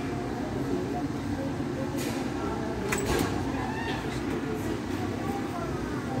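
Indistinct background voices over a steady rumble of city street noise, with a couple of sharp clicks about two and three seconds in.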